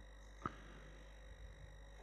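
Near silence: room tone with a faint steady electrical hum and thin high-pitched tones, and one brief soft click about half a second in.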